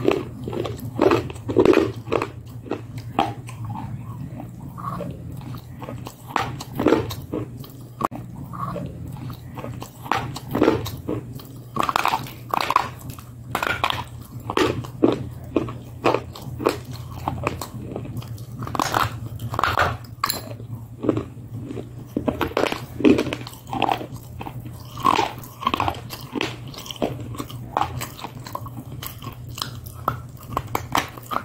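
Close-up crunching bites and chewing of hard, brittle white sticks, with sharp crunches coming several times a second in uneven clusters. A steady low hum sits underneath.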